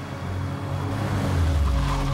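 A car driving in fast and pulling up: engine and tyre noise swell to a peak near the end, over tense background music.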